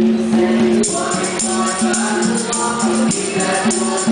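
A nasyid group of boys singing in harmony into microphones, with percussion keeping a steady beat behind the voices.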